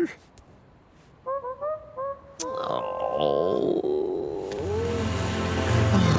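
Four short honk-like calls, then a longer wavering, voice-like call. Background music with a steady bass line comes in about four and a half seconds in.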